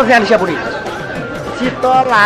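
Voices talking over background music, with chatter in the middle stretch.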